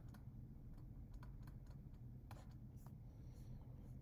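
Faint taps and light scratches of a stylus writing on a tablet screen: a few soft ticks scattered over a low steady hum.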